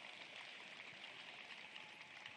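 Near silence: faint, steady room tone of an indoor ice rink, an even hiss with no distinct event.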